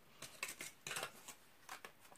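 Packaging being handled: a few brief, soft crinkles and rustles, quiet and irregular.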